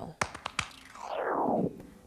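A short whoosh sound effect that falls in pitch about a second in, preceded by a few sharp clicks, marking a transition between segments.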